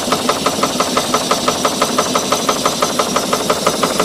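Stuart 5A model steam engine running on steam from a coal-fired boiler, its speed just raised, with a quick, even beat of exhaust puffs.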